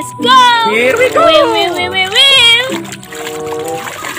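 Water splashing and sloshing in a plastic basin as a muddy toy ball is scrubbed by hand, under a voice making gliding, wordless exclamations for the first two and a half seconds and background music with held notes near the end.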